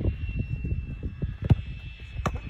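Wind rumbling on the microphone, with a single sharp thud of a football being kicked about one and a half seconds in.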